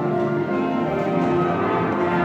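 High school concert band playing, with full held chords from the ensemble.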